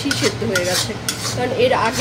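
Metal spatula scraping and stirring a thick masala paste around a black iron kadai, in repeated quick strokes against the pan, while the paste is being fried.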